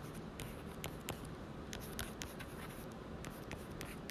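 A stylus writing by hand on a tablet screen: faint, irregular taps and scratches.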